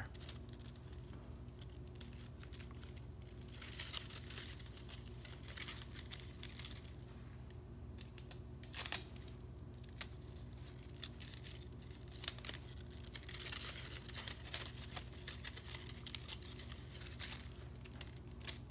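Folded paper pieces being handled and pressed together, giving short, scattered rustles and crinkles, with a sharper crackle near the middle.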